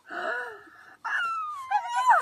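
A young child's playful vocal sounds: a short breathy squeal, then, about a second in, a long high-pitched whine that slides down in pitch.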